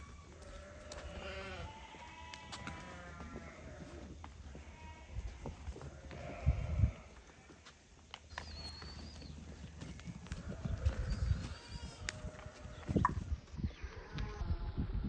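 Sardi sheep bleating, several calls in the first few seconds and more near the end, with a few low thuds in between.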